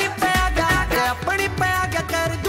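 Instrumental passage of a Haryanvi pop song: a melody of held and short notes over a steady bass and drum beat.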